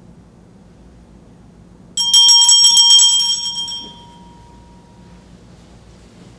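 A small hand bell rung rapidly, starting suddenly about two seconds in: a quick run of strokes for about two seconds, then ringing out and fading. It is the bell that signals the start of Mass.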